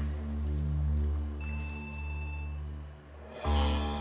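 Dramatic score's low sustained drone, with a mobile phone's electronic ringtone starting about a second and a half in: a high, steady, multi-note tone lasting about a second. A louder burst comes in near the end as the ringing goes on.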